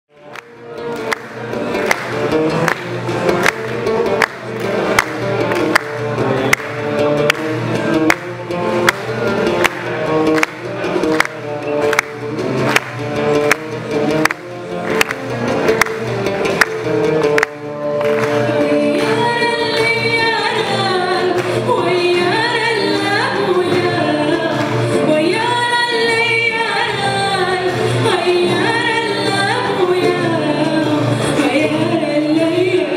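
Live band playing a Riffian Amazigh song. It opens with an instrumental introduction of steady strokes on the beat over sustained chords, and a little past halfway a female voice begins singing over the band.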